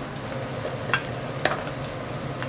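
Fried rice sizzling in a nonstick pan while it is stirred with a wooden spatula, with two sharp clicks about a second in and half a second later.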